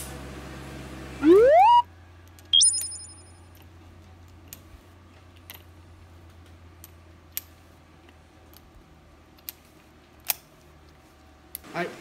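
An edited-in rising swoop sound effect, then a high bright chime. After them come scattered faint metallic clicks of a Ruger Super Redhawk .44 Magnum revolver being handled and loaded with its cylinder open.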